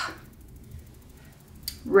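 A woman's voice in a short pause: a word trails off at the start, then only a faint low room hum, and she starts speaking again near the end.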